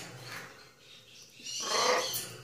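A blue-and-gold macaw calling: soft sounds at the start, then a louder, rasping call about a second and a half in.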